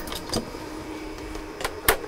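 Handling noise from a handheld analog multimeter being picked up and brought against the switcher panel: a few light clicks and knocks, with a sharp click near the end.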